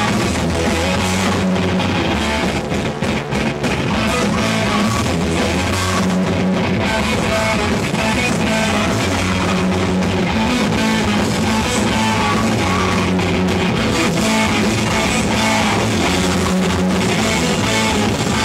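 Heavy metal band playing live: distorted electric guitars and a drum kit, loud and continuous.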